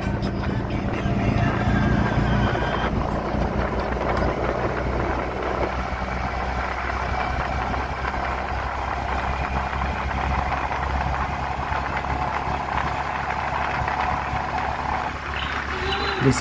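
Engine and road noise of a moving vehicle, heard from inside as it drives along: a steady low drone under a constant rushing hiss.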